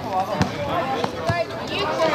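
A basketball bouncing on an outdoor court, about three bounces, with players' voices calling out over it.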